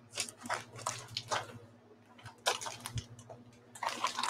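Fabric bag rustling in short, irregular bursts as a hand rummages inside it, over a faint steady hum.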